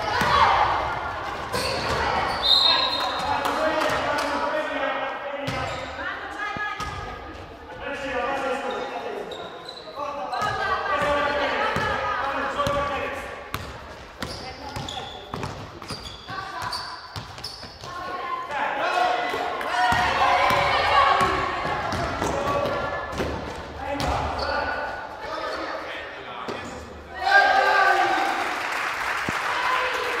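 Basketball bouncing on a gym floor during a game, with players and spectators calling out almost throughout, echoing in the hall.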